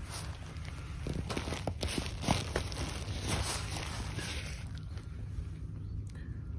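Handling noise as a packed nylon tent in its stuff sack is set down on a digital kitchen scale: light rustling with a few soft knocks, over a steady low outdoor rumble.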